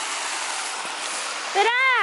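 Steady rush of running water, with a child's voice starting about a second and a half in.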